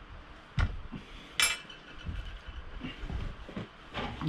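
Glassware being handled on a glass-topped table: a dull knock, then a sharp glass clink about a second and a half in that rings briefly, followed by softer knocks as a glass soda bottle and glass mug are moved and set down.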